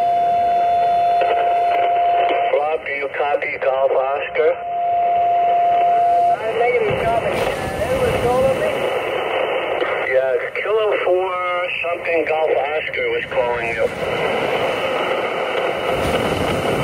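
Xiegu G90 HF transceiver's speaker putting out a weak, garbled single-sideband voice from a distant station on 40 meters, under a steady hiss of band noise. A steady whistling tone sounds for the first couple of seconds and again around five to six seconds in. The signal is barely copyable, a struggle to make the contact.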